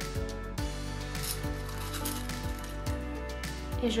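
Background instrumental music with a steady beat.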